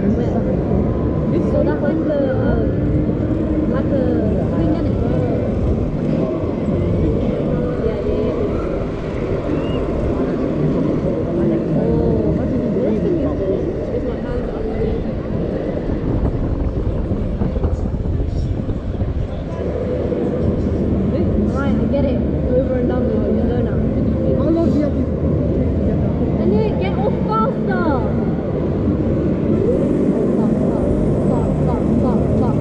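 Steady wind rumbling on the camera microphone high up on a fairground ride, with indistinct voices of riders mixed in.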